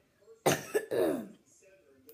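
A boy coughing: a sharp cough about half a second in, then a second, voiced cough that falls in pitch.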